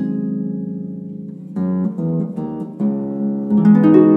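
Concert pedal harp played solo: low notes ring and slowly fade, then a run of separately plucked notes begins about one and a half seconds in, growing louder near the end.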